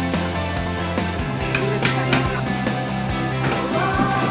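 Background music with a steady beat and a held bass line that moves up to a higher note about a second in.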